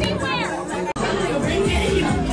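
Voices talking over background music in a crowded club; about a second in the sound cuts abruptly to another recording of music and chatter.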